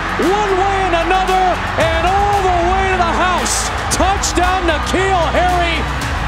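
Stadium broadcast sound of music with voices over it. Pitched sounds that rise and fall go on without a break over a steady low rumble.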